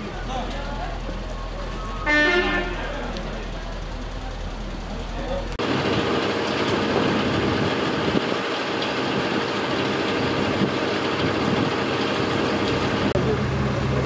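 A vehicle horn toots once, briefly, about two seconds in over outdoor background noise. After an abrupt cut about five and a half seconds in, a louder steady vehicle noise takes over.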